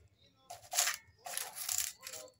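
Wax paper rustling and crinkling in two short bursts as a melted plastic bottle-cap flower is peeled off it.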